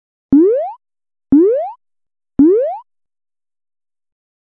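Three cartoon 'boing' sound effects about a second apart, each a quick upward-gliding pitch with a sharp start.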